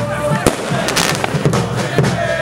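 Firecrackers going off amid a crowd of fans' voices, with sharp bangs about half a second and a second in.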